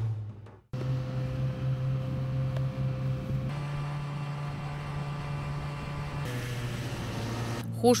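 Snowmobile engine running steadily, heard from the sled it tows across the snow, a low drone whose pitch shifts slightly a couple of times. It starts abruptly about a second in, and a woman's voice begins near the end.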